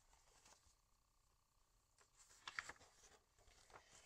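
Near silence, then faint rustling of a paperback picture book being handled, its pages moving, with a brief sharper paper sound about halfway through.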